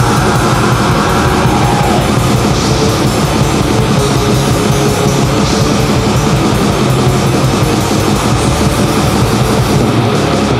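Atmospheric black metal recording: a dense, continuous wall of distorted guitars over fast, rapid drumming, loud and unbroken.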